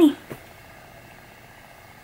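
A woman's last spoken word ends at the start, followed by a soft click, then steady low room tone with a faint hum.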